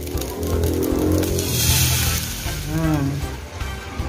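Background music with a steady beat, and under it a brief hissing sizzle, about one to two seconds in, as liquid teriyaki sauce is poured into a hot pot of oil and garlic.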